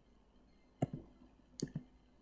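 Two faint computer mouse clicks, each a quick click-and-release pair, about a second in and again near the end, advancing the presentation's slide bullets.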